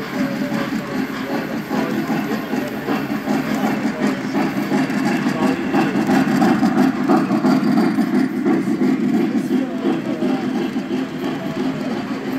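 Three-rail O-gauge model train running past on the layout: a steady rumble of metal wheels on the track, swelling in the middle as the passenger cars roll by, with people chatting in the background.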